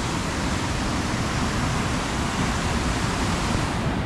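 Fast river rushing over rocks just below the footbridge: a steady wash of water noise.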